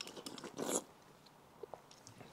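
A person slurping cold-tea ochazuke from a ceramic rice bowl while shoveling it in with chopsticks: a few light clicks of chopsticks against the bowl, then one short slurp under a second in.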